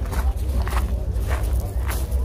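Footsteps on gravel, about one step every half second, over a steady low rumble, with voices murmuring faintly in the background.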